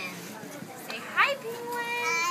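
A toddler's excited vocalizing: a short rising-and-falling squeal about a second in, then a held, steady 'aah' near the end.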